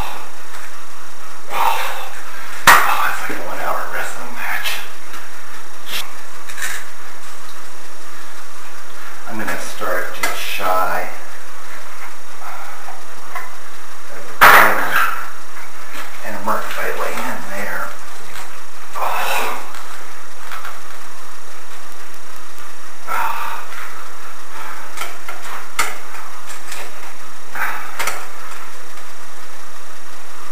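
A thin sheet-metal blade scraping and prying between a tank's glass pane and its plywood frame, in short irregular bursts, with two sharp knocks about 3 and 14 seconds in.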